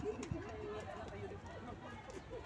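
Quiet, indistinct talk among a group of women.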